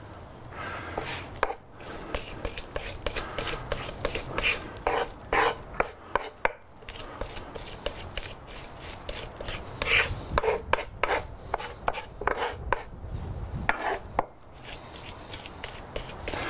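Chef's knife chopping garlic with coarse sea salt on a wooden cutting board, working it into a garlic paste: a run of irregular knocks of the blade on the wood.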